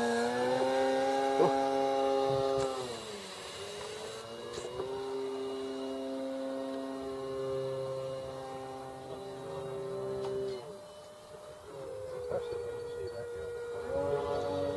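Electric radio-controlled model airplanes in flight. A buzzing motor-and-propeller whine shifts in pitch with the throttle, drops away sharply about three seconds in, comes back at about five seconds, and eases off again before the end.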